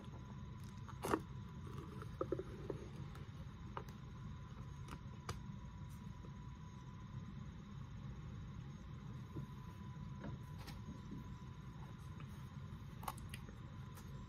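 Faint scattered clicks and crinkles of a plastic single-serve cottage cheese cup being handled and its peel-off lid pulled away, over a steady low hum with a thin steady tone.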